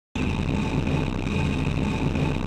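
Steady, low, distorted drone opening an instrumental trap-metal beat. It cuts in abruptly just after the start and holds at an even level.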